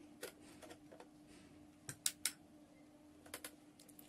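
A few faint clicks and knocks from handling a small plastic-cased digital conductivity meter as it is switched on, the sharpest two coming close together about two seconds in, over a steady low hum.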